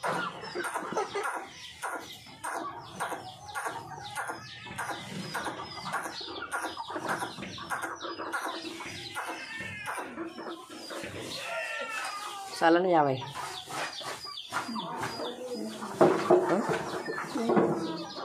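Flock of young parrot-beak aseel chickens clucking and calling, many short calls overlapping without a break; a louder call comes about twelve seconds in and again near the end.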